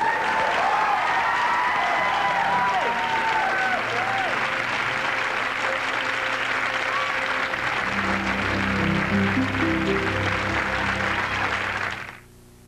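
Studio audience applauding, with shouts and whoops over the first few seconds. Music comes in low and steady about eight seconds in and plays under the applause until the sound cuts off at the end.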